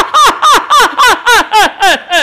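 A Chinese opera performer's stylized stage laugh: a long, loud run of 'ha' syllables at about three to four a second, each falling in pitch.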